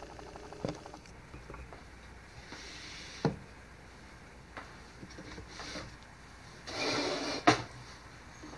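Handling noise on a wooden work surface: a few sharp knocks, the loudest near the end, and two brief rubbing or scraping sounds.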